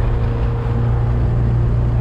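1979 Alfa Romeo Alfetta 2.0's twin-cam four-cylinder engine running steadily at highway cruising speed with road and tyre noise, heard from inside the cabin. The low hum stays even throughout, and the car runs smoothly with no driveline vibration on its new driveshaft couplings.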